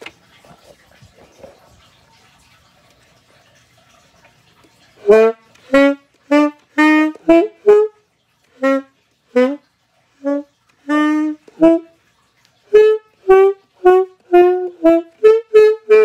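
Alto saxophone playing a tune in short, detached notes, which start about five seconds in after faint handling noise. There is a brief pause near the twelve-second mark before the next phrase.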